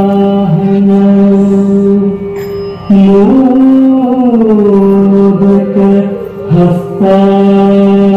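An Indian welcome song with a chant-like melody sung in long, drawn-out notes. There is a short break about two seconds in, then a phrase that climbs and falls in pitch, and another brief pause near the end.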